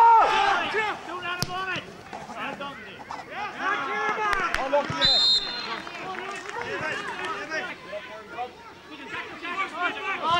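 Men shouting and calling out on a Gaelic football pitch, loudest at the start. A short, steady high whistle note sounds about five seconds in, and a single sharp knock comes just over a second in.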